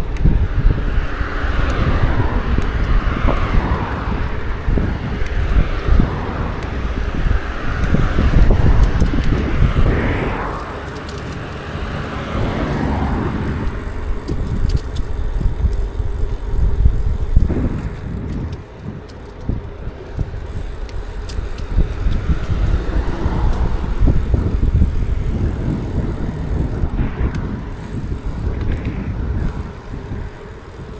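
Wind rumbling on the microphone of a moving bicycle, with tyre noise on asphalt. Cars on the road alongside pass several times, each a swell of noise lasting a few seconds.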